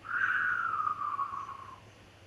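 A man's mouth-made sound effect: one falling, whistle-like tone lasting nearly two seconds, acting out an egg whizzing down a zip line.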